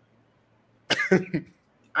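A man coughs briefly, about a second in, after a short silence.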